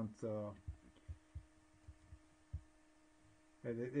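A man's brief speech at the start and end, and between them a quiet pause with a steady low hum and four or five soft, short, low thumps.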